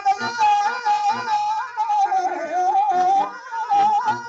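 A singer draws out one long, ornamented note of a Telugu stage-drama padyam (verse), bending and wavering in pitch, over a steady instrumental accompaniment.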